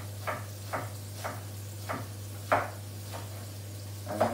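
Kitchen knife chopping a red onion on a wooden chopping board: separate knife strikes about every half second, the loudest about two and a half seconds in.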